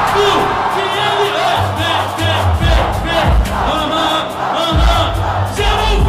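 Live freestyle rap battle: an MC rapping into a microphone over a hip-hop beat with heavy bass hits, and a crowd yelling.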